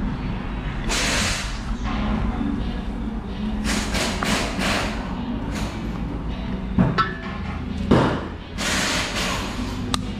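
A steel oil filter canister being pried and twisted apart with pliers, giving scraping and rustling metal sounds and two sharp knocks about seven and eight seconds in. A steady low hum runs underneath.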